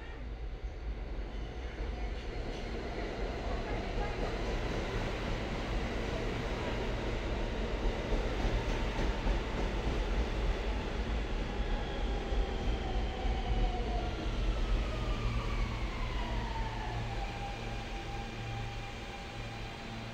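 New York City subway N train pulling into the station: the rumble of its wheels on the rails builds and is loudest in the middle, then a falling whine as it brakes to a stop near the end.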